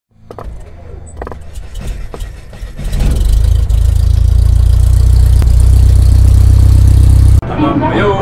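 A loud, steady low rumble with hiss, building up over the first three seconds and cutting off suddenly near the end.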